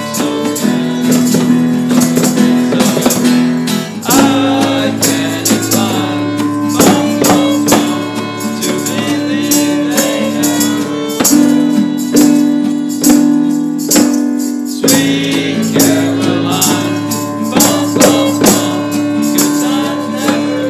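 Live acoustic band playing a song: acoustic guitar and violin with a tambourine jingling in rhythm and boys' voices singing over long held notes.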